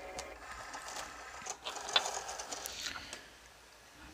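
Cricut cutting machine drawing a cutting mat in through its rollers: a small motor whirring, with a few faint clicks, dying away about three seconds in.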